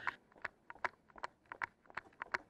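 Quick running footsteps, faint and even, about two and a half steps a second.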